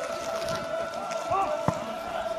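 Scattered voices of people calling out in the open, over a steady high-pitched hum, with one sharp knock near the end.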